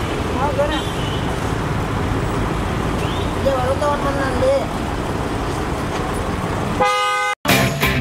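Busy night-street traffic noise at a parked car, with people's voices calling out now and then and a brief steady tone near the end. Shortly before the end it cuts to a moment of silence, and a music sting begins.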